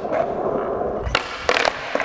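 Skateboard wheels rolling on smooth concrete, then a sharp tail pop about a second in and a few quick clacks as the flipped board comes down. It is a big flip (big spin kickflip) attempt: the board flips, but the rider doesn't jump with it, so it lands on the floor without him.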